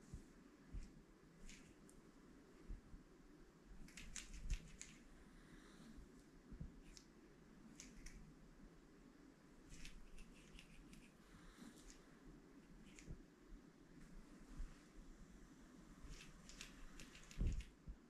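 Near silence: small-room tone with faint scattered clicks and rustles from hands working a knit sock puppet, ending in a soft thump.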